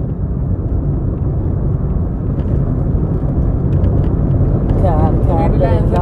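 Bus engine running under way with road noise: a dense, steady low rumble that grows a little louder in the second half. A man's voice calls out near the end.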